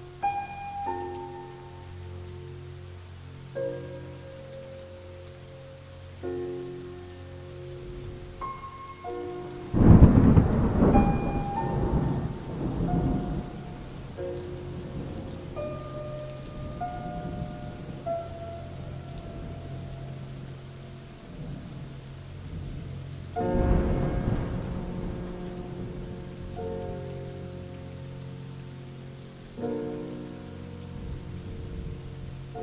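Rain falling steadily on a surface with two peals of thunder, a loud rumble about ten seconds in and another near the three-quarter mark, each fading over a few seconds. A soft instrumental melody of sustained single notes plays throughout.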